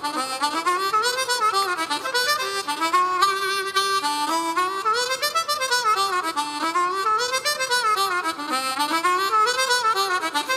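Harmonica played fast, cupped in both hands: quick runs of notes sweep up and down in repeating waves about one and a half seconds apart.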